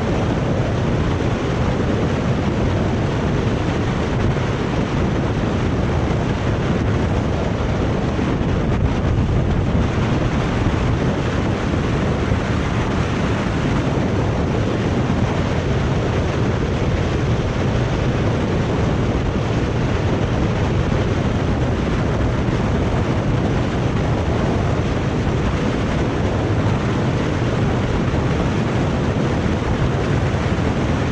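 Steady wind rushing over the bike-mounted action camera's microphone as a mountain bike rolls fast down an asphalt road, with the tyres humming on the tarmac underneath.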